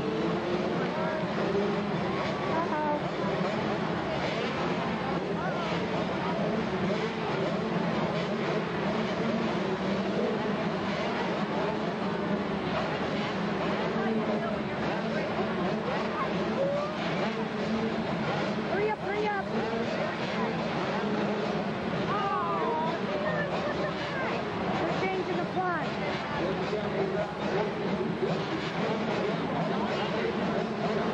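A group of 80cc two-stroke motocross bikes running at the start line, a steady engine drone with some wavering revs, mixed with crowd chatter.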